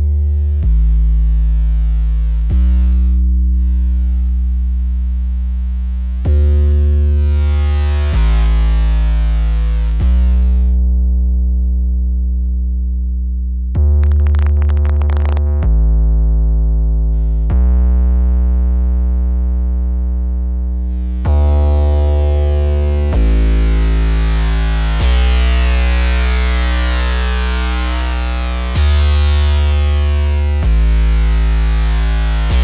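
Soloed Massive X sub bass synth playing a looped line of held bass notes, a new note about every two seconds, run through Neutron 4's Exciter Trash distortion. The gritty top end comes and goes as the distortion's wave shape is switched, and gets super gritty in the last stretch.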